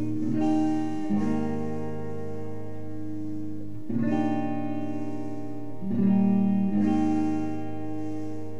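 Guitar playing ringing chords in a song, each chord held for a second or two before the next.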